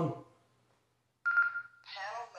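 Baofeng UV-5R handheld radio being switched on: a single steady high-pitched beep about half a second long from its speaker, about a second and a quarter in. Another short sound from the radio follows near the end.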